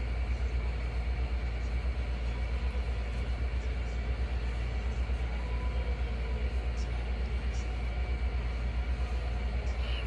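Steady low rumble with a quick, slight flutter in loudness.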